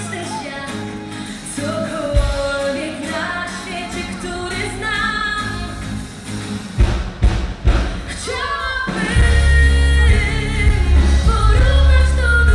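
Live pop band with a female lead singer: her sung melody runs over keyboard chords and bass. A few loud drum hits come about seven seconds in, and the full band with a heavy bass comes in about nine seconds in.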